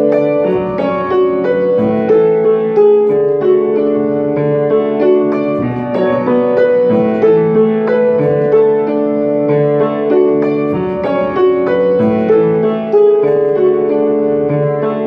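Grand piano being played: a flowing passage of held chords with a melody over them, new notes struck about every second.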